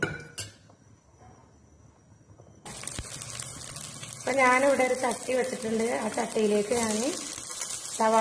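Sliced shallots frying in hot oil, a steady sizzle that starts abruptly about a third of the way in after a near-quiet opening.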